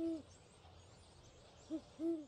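Low hooting calls, each rising and falling slightly in pitch: one at the start, then a short hoot and a longer one close together near the end, over a faint steady hiss.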